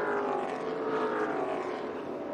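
Several NASCAR Xfinity stock car V8 engines running together at reduced caution-lap speed as the field passes. Their overlapping engine notes drift slowly up and down in pitch.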